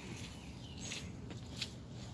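Faint outdoor background: a steady low hum with a few brief rustles or ticks.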